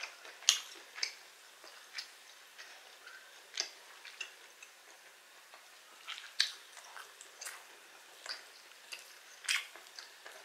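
Close-miked eating sounds: a knife and fork clicking and scraping on a wooden board as steak is cut, with chewing. The clicks are irregular and sharp, a few a second, with the loudest about half a second in, and again near the middle and near the end.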